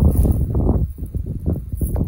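Wind buffeting the microphone: an uneven low rumble with soft knocks and rustling.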